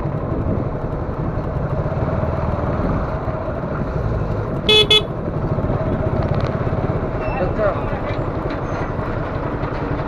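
Motorcycle engine running at low speed in second gear, with steady road rumble. About five seconds in, a vehicle horn gives two short, loud toots.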